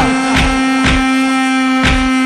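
Live dabke folk music: one steady held drone note with three drum beats over it.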